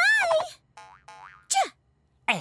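Cartoon sound effects: a voice trails off at the start, then a faint springy warble and a short boing whose pitch falls steeply about a second and a half in.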